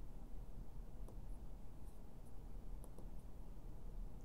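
Quiet steady room hum with a few faint clicks from the relay timer board's small tactile push buttons being pressed.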